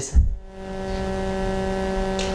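Steady electrical hum of several unchanging tones with a low rumble beneath, from the hall's microphone and sound system, with one short low thump just after the start.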